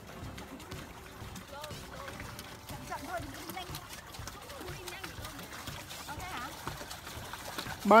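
Quiet, indistinct voices talking over light outdoor background, then a loud, drawn-out shout of "bye" right at the end.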